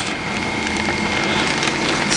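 Pelletized substrate and water pouring from a wet bagging machine's valve into a plastic grow bag: a steady rushing rattle with a faint high tone under it.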